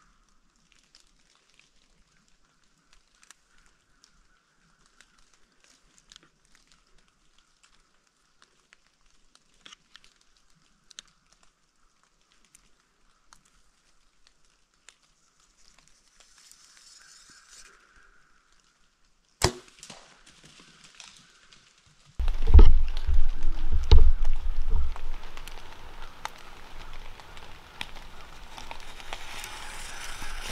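A bow shot, heard as a single sharp snap about two-thirds of the way in, after a stretch of faint scattered ticks and rustles in the leaves. About three seconds later comes loud crashing and rustling through dry leaves and brush, with heavy thumps, as the hit deer runs off hard; it tapers to lighter rustling.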